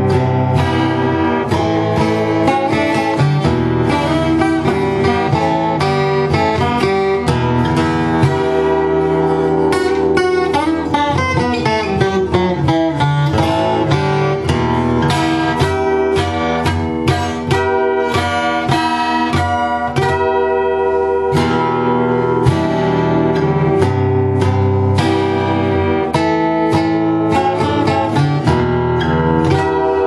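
Eros 612 Nevada twelve-string acoustic guitar, strung with Martin Lifespan strings, strummed and picked unplugged. There is a falling run of notes about halfway through.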